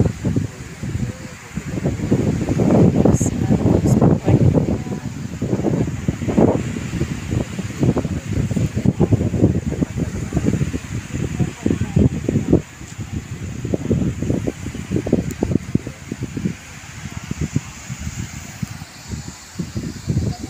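Wind buffeting the microphone in irregular gusts, a rough low rumble that swells and drops every second or so.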